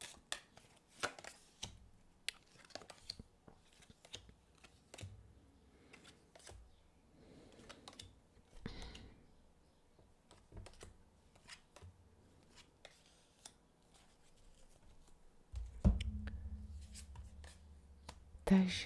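Tarot cards being dealt and laid out one by one on a hard tabletop: faint, irregular clicks and slides of card on card and on the table. A low hum comes in near the end.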